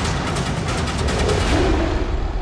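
Opening title theme music driven by fast, dense drum hits.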